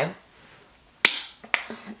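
Two sharp smacks made by a hand, about half a second apart, the first a little louder, after about a second of quiet room tone.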